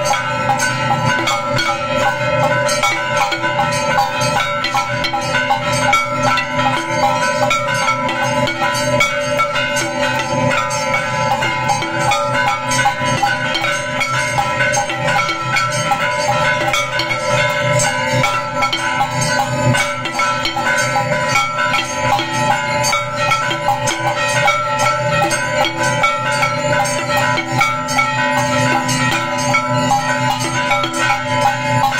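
Temple bells and hand percussion sounding without a break as aarti accompaniment: several ringing tones held steady over a dense run of rapid strikes.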